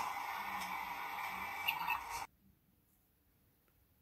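Faint steady hiss of background noise for about two seconds, then it cuts off abruptly to dead silence.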